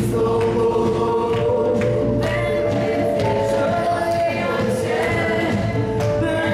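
Live church worship band playing an upbeat Polish worship song with voices singing, over keyboard, drum kit, acoustic guitar and percussion.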